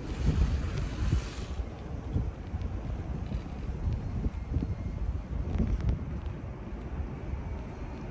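Wind buffeting the microphone: an uneven, gusty low rumble, with a brighter rushing hiss over the first second and a half.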